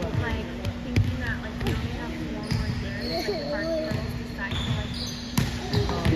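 A volleyball being struck and bouncing on a hardwood gym floor, sharp knocks echoing in a large hall, the loudest near the end. Short high squeaks that fit sneakers on the court, and players' voices, sit over a steady low hum.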